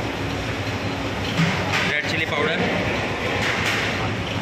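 Steady rumbling roar of a commercial gas range burning on a high flame, with a brief thump about one and a half seconds in.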